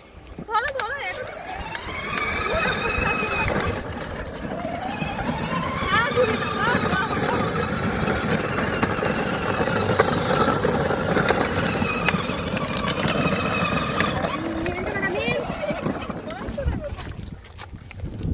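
Battery-powered ride-on toy jeep running, with a whine from its electric drive that rises in pitch as it picks up speed in the first few seconds, holds steady, then falls away near the end as it slows.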